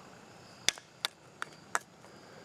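Four short, light clicks, evenly spaced about three a second, from broken coconut shell pieces being handled.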